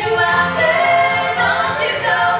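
Live band music: a female lead singer with backing singers joining in, holding long notes over the band.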